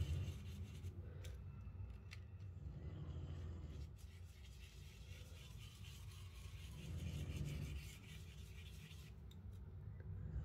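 Faint soft scrubbing of an ink-blending brush swirled over a plastic stencil on card stock, with a few light ticks.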